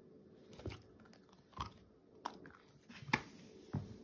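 A miniature schnauzer chewing a long-lasting chew treat: a run of irregular sharp clicks and crunches, about seven in four seconds, as its teeth work the treat.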